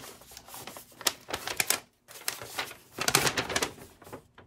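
A stiff paper instruction sheet being unfolded and handled: crisp crackling rustles, with a brief pause about two seconds in.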